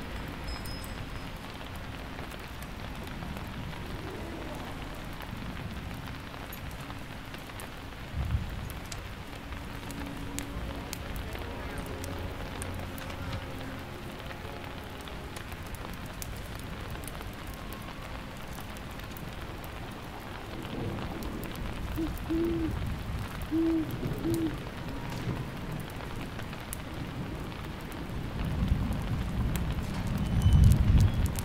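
Steady rain with low thunder rumbling, a sudden low thud about eight seconds in and a rumble building near the end. About two-thirds of the way through, three short, low hooting notes sound over the rain.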